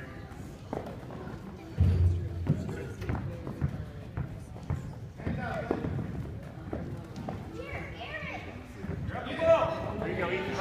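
Youth basketball game on a gym court: indistinct voices of players and spectators calling out, with thuds of the basketball and footsteps on the floor. A loud thump about two seconds in, and a loud shout near the end.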